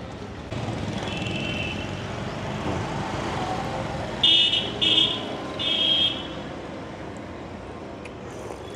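Street traffic running steadily, with a vehicle horn honking: a fainter beep about a second in, then three short, loud honks in quick succession around the middle.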